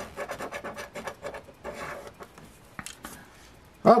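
A large coin scratching the coating off a scratch-off lottery ticket on a wooden table, in quick back-and-forth strokes that stop about three seconds in, followed by a couple of light clicks.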